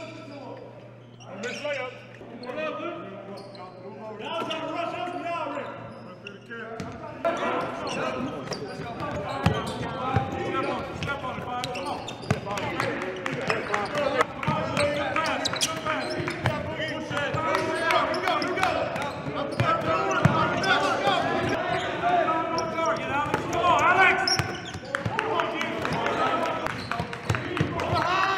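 Basketballs bouncing on a hardwood gym floor, with many overlapping voices in a large gym. The sound grows louder and busier, with dense knocks, about a quarter of the way in.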